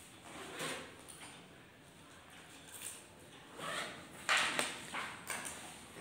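Ballpoint pen writing on lined paper: scratchy strokes in several short spurts, the loudest about two-thirds of the way in.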